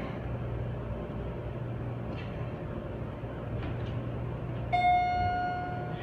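Schindler 300A hydraulic elevator car riding upward, with a steady low hum inside the car. Near the end a single electronic chime tone sounds for about a second as the car comes up to the next floor.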